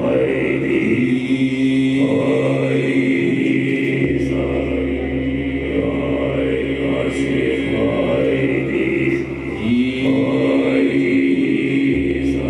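Live drone music: a deep, chant-like male voice sung into a microphone, held on one pitch over sustained droning tones. The held note slides up into place about a second in and again near the end, and a deep bass drone drops out early and returns about four seconds in.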